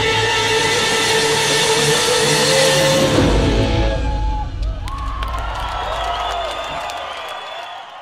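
A live rock band ends a song on a loud held chord with a wash of cymbals, cutting off about four seconds in. A large crowd then cheers, whistles and claps, dying away near the end.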